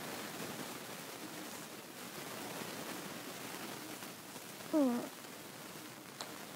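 A single short meow, falling in pitch, about five seconds in, over faint steady background hiss.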